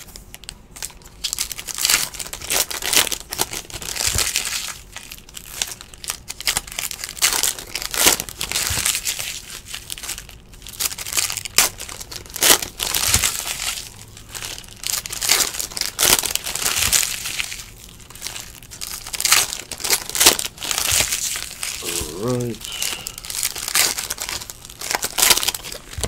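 Foil wrappers of 2017-18 Donruss basketball card packs crinkling and rustling in quick, irregular bursts as the packs are handled and torn open.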